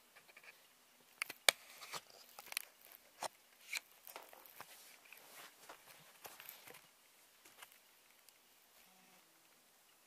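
Handling noise of a camera being taken off its tripod and carried: scattered clicks, knocks and rubbing, the sharpest click about a second and a half in, dying away after about seven seconds.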